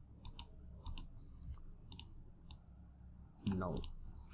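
Light, sharp clicks of a computer mouse and keyboard, one every half second or so, with a short spoken word near the end.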